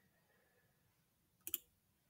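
Near silence, broken by one short double click about one and a half seconds in.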